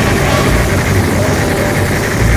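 A loud, steady rumbling noise, dense and heavy in the low end.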